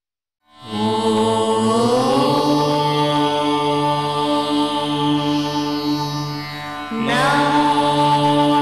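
Devotional music with chanted voices starting about half a second in after silence: long held notes over a low drone, the pitch gliding up early on and a new phrase starting near the end.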